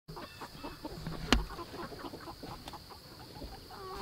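A flock of Freedom Ranger meat chickens clucking softly in short, scattered calls. A single sharp knock sounds about a second in.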